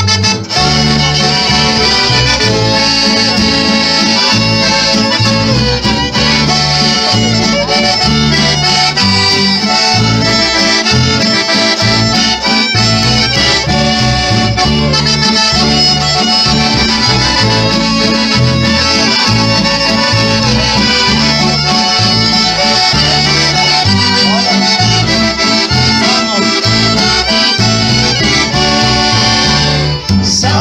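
Instrumental folk music led by a piano accordion, with a strummed acoustic guitar and a violin, over a bass line that steps back and forth between notes in a steady rhythm.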